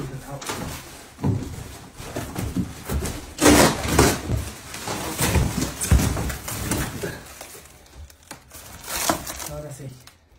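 A large cardboard furniture carton scraping, rustling and knocking as it is pulled up off a dresser. The plastic wrap and foam round the dresser crinkle as it is handled, with the loudest scrapes about three and a half seconds in and again at six seconds.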